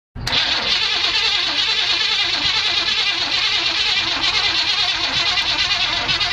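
Starter cranking the 1990 Chevrolet C1500's 5.7-litre V8 steadily without it firing, a non-starting engine. It begins suddenly and cuts off just after the end.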